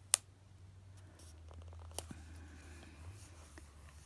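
Hands handling a planner sticker: one sharp click right at the start and a smaller click about two seconds in, with faint paper rustle and ticks between, as the sticker is peeled and pressed onto the page.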